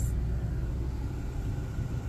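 Steady low road and engine rumble heard inside a car's cabin while it drives slowly.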